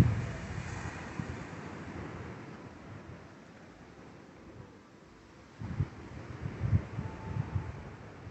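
Wind gusting across a phone microphone: low, irregular buffeting, strongest at the start, easing to a calm lull, then gusting again from a little past halfway.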